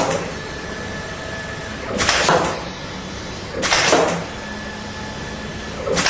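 CXD Smart Mat CMC computer-controlled mount cutter at work: four short strokes, each about half a second long and about two seconds apart, with a steady faint motor whine between them.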